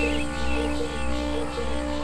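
Psychedelic trance track: sustained synth drones and a low bass tone under a quick repeating blip pattern, about four blips a second.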